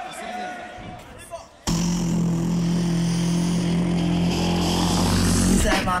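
Beatboxer's sustained vocal bass drone through the stage PA. It starts abruptly about two seconds in and holds one steady low pitch for about four seconds before the vocal line begins. Faint crowd voices come before it.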